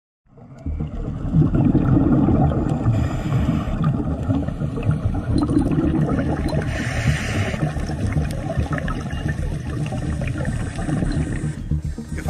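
Underwater recording from a diver's camera: a steady low rumble of moving water, with faint scattered clicks.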